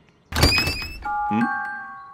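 Cartoon sound effect of a door flung open: a sudden thunk about a third of a second in, with a short rising whistling sweep. It is followed by a held chime-like chord that slowly fades.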